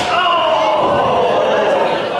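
A sharp strike impact in the wrestling ring right at the start. It is followed by a drawn-out shout whose pitch falls over about a second and a half, over crowd chatter in a large hall.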